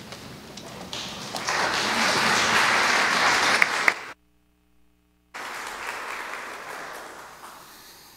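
Audience applauding, swelling to full strength over the first couple of seconds. It breaks off suddenly for about a second at an edit, then comes back and fades away.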